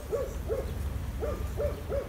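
A dog barking, a string of about five short, pitched barks.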